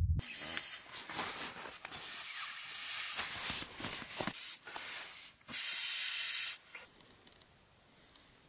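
Nylon fabric of an inflatable sleeping pad rustling and crinkling as it is handled and pressed, followed by a steady hiss of about a second that stops suddenly.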